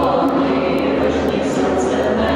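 A mixed group of men and women singing together to acoustic guitar accompaniment in a stone church, in a steady, sustained group chant.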